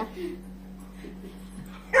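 A dog whimpering, with short pitched cries right at the start and again at the end, over a steady low hum.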